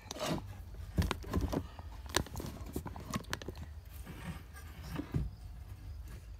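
Irregular handling knocks, taps and scrapes: a wooden walking stick being moved about and set down on a workbench board, with the camera being handled. No power tool is running.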